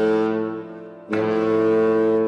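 Bass clarinet and bass trombone playing long, low held notes together in contemporary chamber music. The first note fades away, and a new one starts sharply about a second in and is held.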